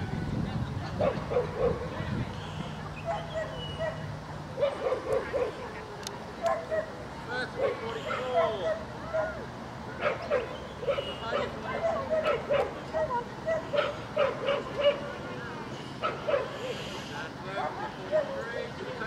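A dog whining and yipping over and over in short cries, over a murmur of voices.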